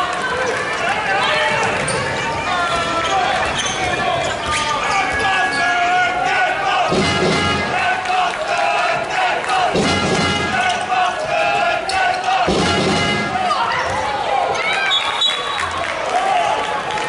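Handball match play in a large indoor sports hall: the ball bouncing on the court floor, with a few heavy thuds, amid players' shouts and crowd voices.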